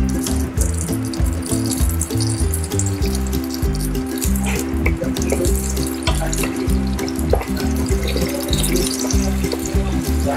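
Mustard seeds, curry leaves and dried red chillies sizzling and crackling in hot oil in a pan as a tempering, under background music with a steady beat.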